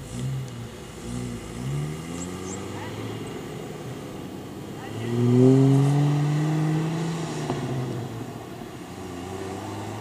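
Four-wheel-drive wagon's engine revving as it drives on sand: two short rises in pitch in the first two seconds, then a louder rev about five seconds in that climbs, holds for about two seconds and eases off.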